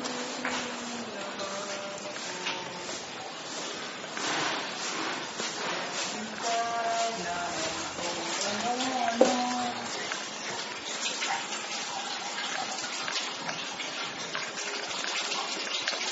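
Steady background hiss with faint, intermittent voices, and a sharp click about nine seconds in.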